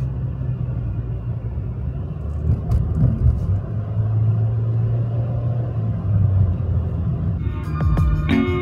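Road noise heard inside a moving car's cabin: a steady low rumble of tyres and engine. Music comes in near the end.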